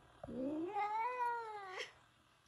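A cat giving one long meow that rises and then falls in pitch.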